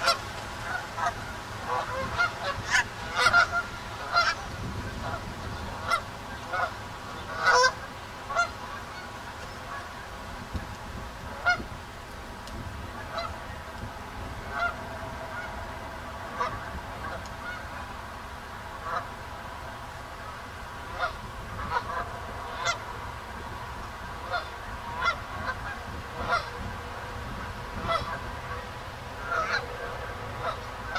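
Canada geese honking: many short honks, coming thick in the first eight seconds or so, thinning out through the middle and picking up again over the last ten seconds.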